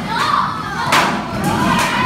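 A group of children shouting and cheering together, with one sharp thump about halfway through.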